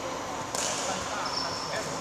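A badminton racket strikes a shuttlecock once about half a second in, with a short echo in the large hall, followed by a brief high squeak of a shoe on the court floor. Voices murmur in the background.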